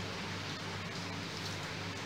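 Steady kitchen room tone: a constant low hum under a soft, even hiss, with no distinct knife strokes standing out.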